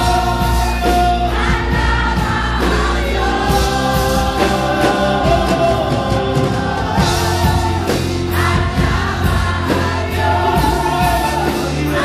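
A Christian worship song performed live: a man sings lead into a microphone, with backing singers and band accompaniment.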